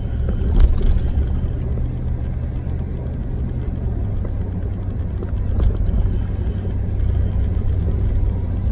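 Steady low rumble of engine and road noise inside a pickup truck's cabin while it drives along, with two light knocks, one about half a second in and one a little past halfway.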